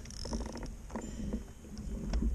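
Wind rumbling and buffeting on an action camera's microphone outdoors, with faint voices in the background.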